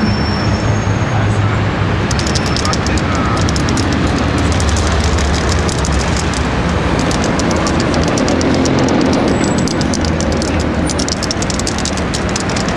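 Steady city traffic rumble from a busy street, with indistinct voices of people nearby. A fast, faint crackle of small clicks runs through the middle.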